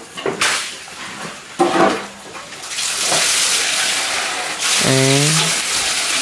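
Water running steadily, a continuous hiss that starts about three seconds in.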